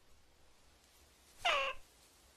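A cartoon character's short high-pitched, meow-like squeak with a falling pitch, about a second and a half in.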